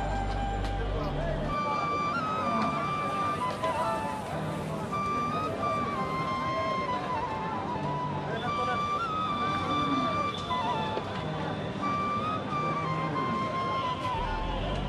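Background music: a melody of long held notes that step up and down in pitch, over a steady bed of noise.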